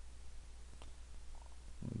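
Low steady hum with a single faint click about a second in; a spoken word begins near the end.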